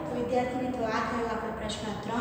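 A woman speaking in a steady teaching monologue; only speech is heard.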